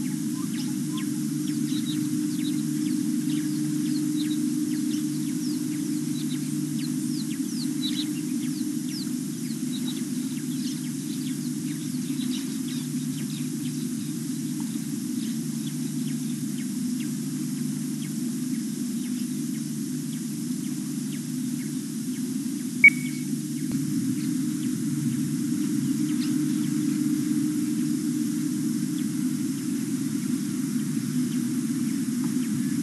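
Scattered bird chirps over a steady low hum, with one sharp click about three-quarters of the way through.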